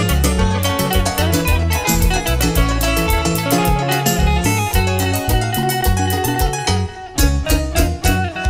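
Live band music: an instrumental intro with a strong bass line and a steady beat, thinning out briefly about seven seconds in before the full band comes back in.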